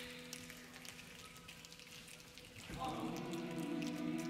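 Children's choir holding a sustained chord that fades away over the first second and a half. After a near-quiet pause, a new chord enters about three seconds in and holds steady.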